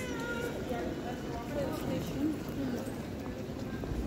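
Busy airport terminal hall ambience: people talking in the background over a steady low hum, with faint clicks.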